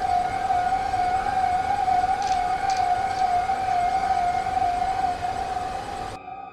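A single steady electronic tone held unbroken for about six seconds, then cut off: a heart-monitor flatline, the sign that the patient's heart has stopped.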